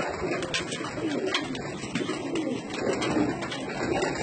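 Domestic pigeons cooing in a loft, a repeated low warble throughout, with scattered sharp clicks.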